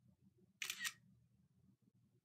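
Smartphone camera shutter sound: one short, crisp double click a little over half a second in as a picture is taken.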